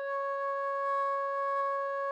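A recorder holding a single long, steady note D, the final note of the melody.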